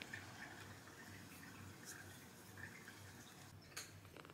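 Faint wet licking and suckling sounds from a ginger Persian kitten licking its own paw, over a very faint, low purr that swells and fades about twice a second. A small click near the end.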